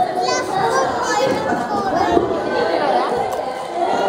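Overlapping chatter of young children and adults, several voices talking at once at a party table.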